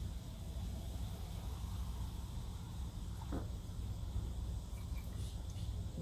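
Shellac poured in a thin stream from a cut-open spray can into a glass jar, a faint trickle over a steady low hum, with one light click about halfway through.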